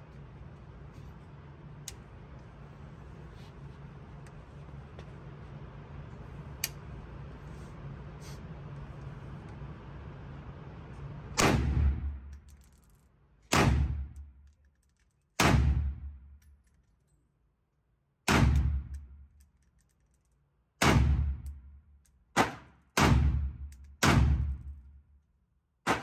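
FN SCAR 17S 7.62x51mm rifle fired eight times in single shots, starting about halfway in, one to three seconds apart and quicker near the end. Each shot is sharp with a short echoing tail off the indoor range walls. Before the first shot there is only steady background noise.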